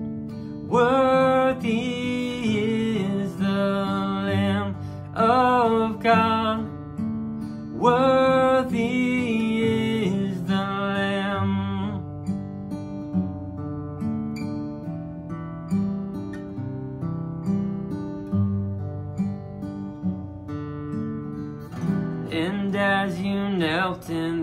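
Acoustic guitar playing the chorus chords, with a man's voice singing the melody over it for about the first half. From about halfway the guitar plays alone, and the singing comes back near the end.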